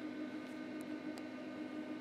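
Quiet room tone with a steady low hum and a few faint clicks from handling a small toggle switch. The multimeter on continuity mode gives no tone: with the switch flipped off, the circuit is open.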